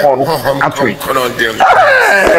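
A man's voice, lively and expressive, with no clear words, swooping up to a high pitch near the end.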